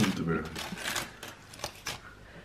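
Crumpled aluminium foil crinkling and crackling as a hand handles and starts unwrapping a foil package: irregular crackles, denser at first and thinning out toward the end.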